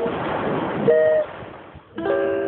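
Steel-string acoustic guitar being picked: a loud rush of noise fills the first second, then a plucked note rings out about a second in and fades, with the next pluck at the very end.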